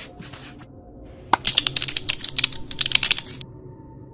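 A marker scratching on a whiteboard for about half a second, then rapid computer keyboard typing for about two seconds, over faint background music.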